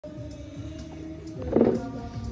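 Music with steady held tones, swelling into a louder burst about one and a half seconds in.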